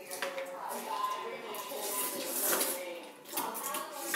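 People eating noodles from bowls: utensils clicking against the dishes, with low mumbled voices and reactions to the spicy food.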